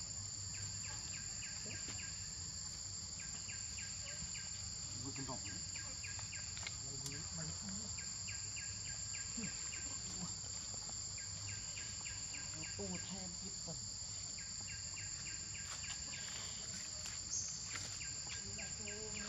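Forest insect chorus: a steady high-pitched drone, with short bursts of rapid, evenly spaced chirps recurring every two to three seconds.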